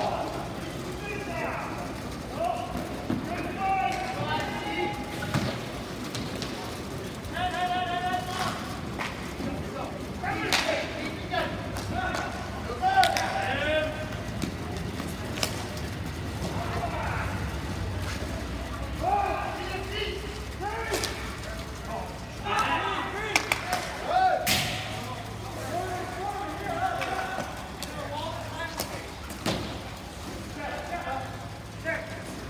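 Ball hockey in play: players' voices calling out across the rink, and now and then sharp clacks of sticks and the plastic ball. The loudest clacks come about 13 s and 24 s in.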